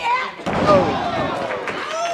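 Wrestlers' bodies slamming onto the canvas-covered boards of a wrestling ring as a jumping leg-drop move (a Famouser) lands, with a voice calling out just after.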